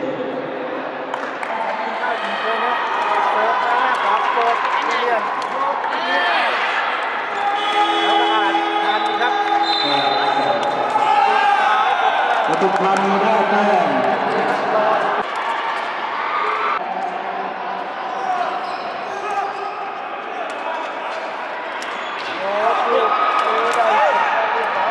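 Sepak takraw rally: sharp knocks of the ball being kicked and struck back and forth, over voices calling and shouting throughout.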